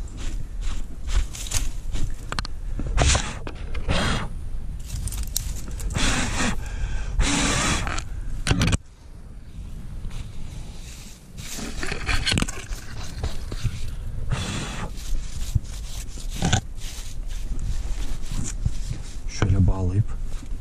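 Gloved hands scraping and brushing moss and dirt off the surface of a boulder in irregular, rough strokes, with a short lull about nine seconds in.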